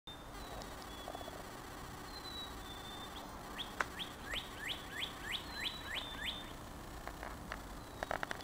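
Northern cardinal singing: a run of about nine clear whistles, each sweeping down in pitch, about three a second, preceded by a few thin high whistles. A single sharp click sounds just as the run begins.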